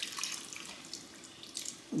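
Beef broth poured from a carton into a skillet of gravy: a soft, steady trickle of liquid into the pan.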